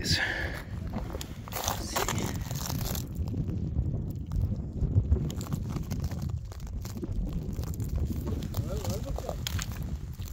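Low wind rumble on the microphone, with scattered short crunches and knocks from footsteps and phone handling on rough, porous lava.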